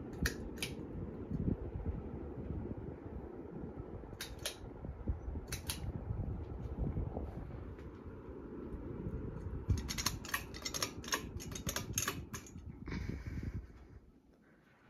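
Hunter Berkeley ceiling fan running on high: a steady low rush of moving air. A few sharp clicks come near the start and again a third of the way in, then a quick run of clicks in the second half.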